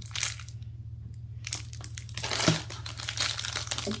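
Thin plastic packaging crinkling in the hand: a cellophane-wrapped stack of trading cards and a clear plastic bag of dice. There is a brief crackle at the start, a short lull, then about two seconds of steady crinkling from about a second and a half in. A steady low hum runs underneath.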